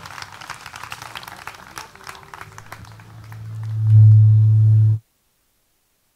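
Audience applause with scattered clapping that thins out over the first few seconds, then a low steady hum from the PA system swells up loud around three to four seconds in and cuts off suddenly about five seconds in.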